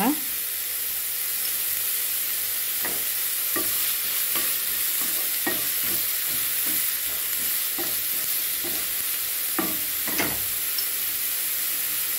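Chopped beetroot and onion sizzling in oil in a nonstick pan. A spatula stirs through them in a series of irregular scraping strokes from about three seconds in until just past ten seconds.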